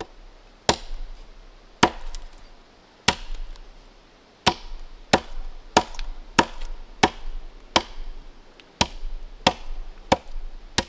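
Axe blows chopping into an upright wooden log post, about eleven sharp strikes. They come about a second apart at first and quicken to a steady rhythm of roughly one every two-thirds of a second after about four seconds.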